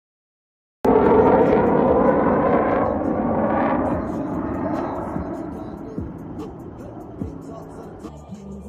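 F-16 fighter jet passing overhead, its engine noise cutting in abruptly about a second in, loudest at first and then slowly fading, with rising and falling sweeps in its tone as it goes by.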